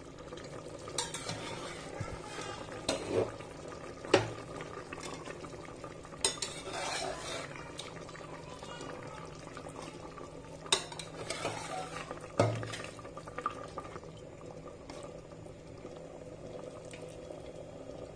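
A metal slotted spoon stirring a simmering meat stew in a pot, knocking against the pot sharply about six times, over a faint bubbling hiss and a steady low hum.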